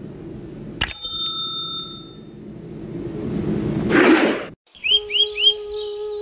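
Sound effects of a subscribe-and-notification-bell animation: a click with a bright bell ding about a second in. A rising whoosh swells and cuts off suddenly about four and a half seconds in. Then three quick bird chirps and flute-like music begin.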